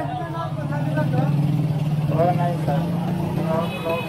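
Busy market street: people talking nearby over a motorcycle engine running steadily. The engine fades out near the end.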